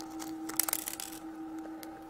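Thin clear plastic wrapper crinkling as fingers pull a tiny toy figurine out of it: a flurry of small crackles, thickest in the first second, then sparser. A faint steady hum runs underneath.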